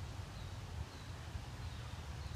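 Quiet outdoor background: a steady low rumble, with no distinct sound event standing out.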